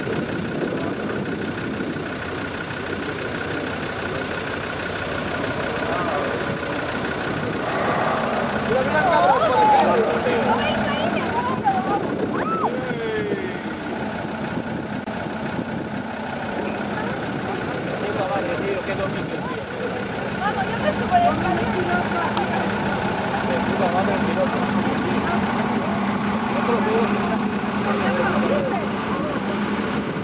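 A vehicle engine running steadily, with people talking over it.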